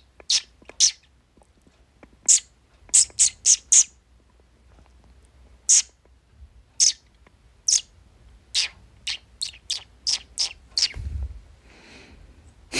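Cockatiel giving short, high chirps, single or in quick runs of up to four, about seventeen in all with pauses between.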